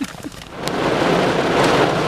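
Heavy rain mixed with hail pelting the car's roof and windshield, heard from inside the car. It comes in about half a second in and holds loud and steady, with one sharp tick early on.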